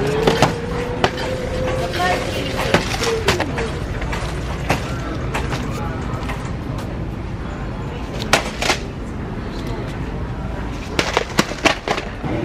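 Plastic single-serve cereal cups clicking and knocking as they are taken off a metal store shelf and stacked in the hand, over a steady store background. A quick run of rattles near the end, as from a shopping cart being pushed.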